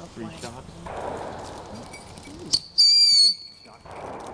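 Ground fountain firework lit and spraying sparks with a hiss, then a sharp pop about two and a half seconds in and a loud, steady shrill whistle lasting about half a second.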